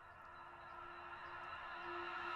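Soft sustained synth chord from an electronic track's intro, a few steady held tones fading in and growing steadily louder.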